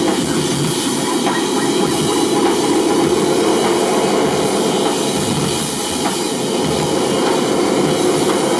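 Loud, steady wall of electric-guitar noise from a guitar laid on the floor and worked through effects pedals, with drums and cymbals played under it in a noise section of a live rock set.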